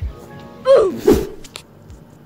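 A young man's short two-part vocal outburst: a falling voiced sound followed by a loud noisy burst that drops in pitch, over faint music.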